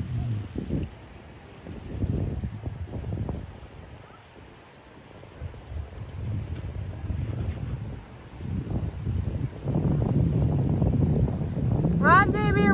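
Wind buffeting the microphone: low, gusty noise that swells and drops every second or two, loudest in the last couple of seconds.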